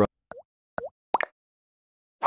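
Three short, bubbly plop sound effects, each a quick dip and rise in pitch, coming within about a second.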